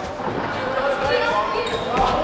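Ball thuds as a football is kicked on a sports-hall floor during an indoor match, with players and spectators calling out in the echoing hall.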